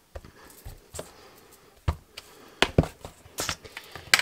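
Clear acrylic stamping blocks being handled and set down on a craft mat, with a series of sharp clacks, the loudest a little before halfway and a quick pair about two and a half seconds in.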